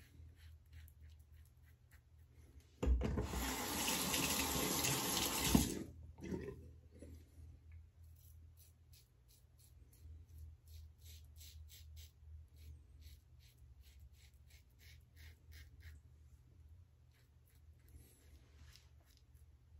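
A bathroom tap runs for about three seconds, starting about three seconds in. Before and after it, the Leaf Twig razor's blade scrapes stubble off the neck in quick, short, quiet strokes, several a second.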